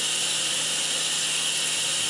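Kitchen faucet running steadily, its stream splashing into a stainless steel sink.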